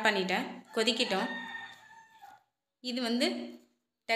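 A woman speaks in short phrases. About a second in, a rooster crows behind her, a long held call that fades out over about a second.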